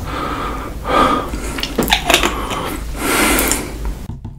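A man breathing out heavily about three times close to the microphone after gulping water, with a few wet mouth clicks between the breaths.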